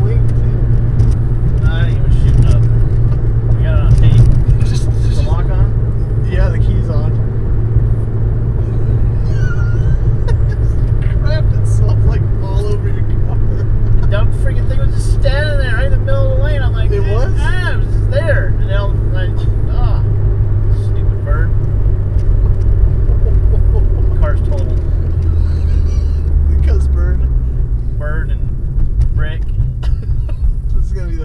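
Inside the cabin of a Mitsubishi Lancer Evolution IX on the move: a steady low engine and road hum, its pitch dropping and fading over the last few seconds as the car slows.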